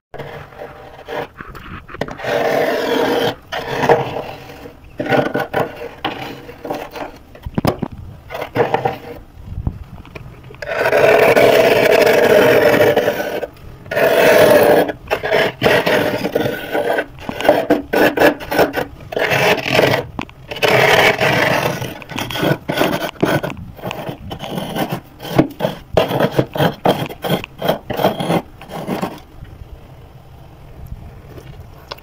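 A big metal spoon scraping flaky frost off the inside walls of a freezer, in a run of irregular strokes. Two longer, louder scrapes come near the middle, then quicker short strokes.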